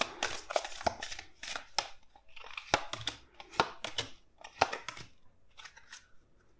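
A tarot deck being handled and dealt by hand onto a table: an irregular run of crisp card snaps and slaps, with a short sliding rustle a little past the middle.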